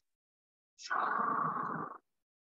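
A single forceful human breath close to a clip-on microphone, a breathy rush about a second long starting about a second in, taken as part of a paced qigong breathing exercise.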